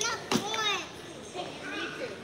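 A young child's high voice calling out twice, fairly faint.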